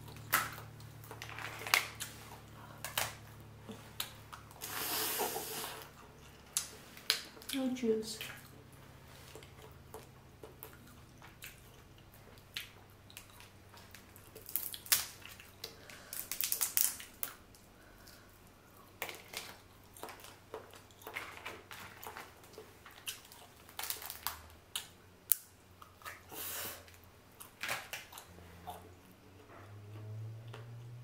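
Close-miked sounds of boiled crawfish being peeled and eaten: shells crackling and snapping in irregular sharp clicks, with wet sucking and chewing between them. A faint steady low hum runs underneath.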